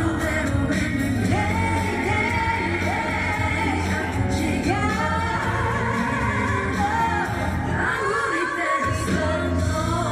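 A woman singing a pop song live into a handheld microphone over band accompaniment, holding long notes with vibrato. The low end of the accompaniment drops out briefly about eight seconds in, then returns.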